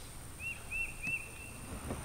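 A bird gives three short, evenly spaced chirps, each rising and falling, over faint outdoor background noise.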